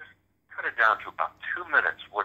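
A person talking in an interview conversation, starting about half a second in after a short pause.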